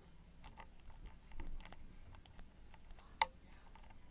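Faint metallic ticks and scrapes of a hook pick working the pin stack of a Corbin Russwin Emhart mortise cylinder under tension. The pick is probing pin three, which is already at the shear line, to rotate it to its correct angle. One sharper click comes near the end.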